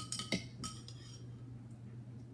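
A metal spoon clinking against a drinking glass about three times in the first second as thick sauce is stirred, each strike ringing briefly. After that it goes quiet apart from a faint low hum.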